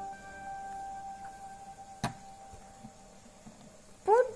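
Soft background music, its held notes slowly fading away, with one sharp knock about halfway through as a plastic glue bottle is set down on the table.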